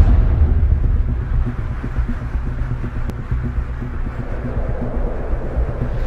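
Cinematic sound-design rumble: a deep, low drone that slowly fades, with one faint tick about three seconds in.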